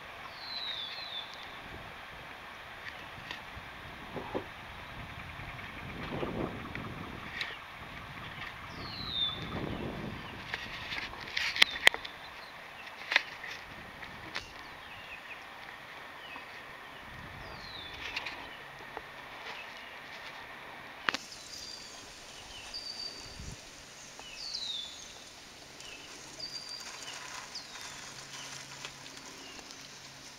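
Bird calls: a short high chirp falling in pitch, repeated about every eight seconds, and brief high notes that recur more often in the second half. Low rumbles come and go in the first third, and a few sharp clicks are the loudest sounds.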